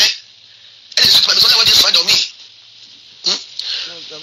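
A person's voice speaking in short phrases, with pauses between them.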